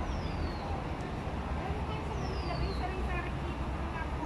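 A bird giving a whistled call that falls in pitch, twice, about two seconds apart, over a steady low rumble.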